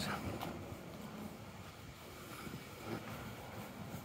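Faint city street background: a low, steady rumble of distant traffic.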